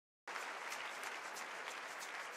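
Large audience applauding, a steady dense clapping that cuts in abruptly just after the start.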